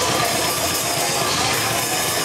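Rock band playing live, a loud, dense wall of drum kit and amplified instruments that goes on without a break.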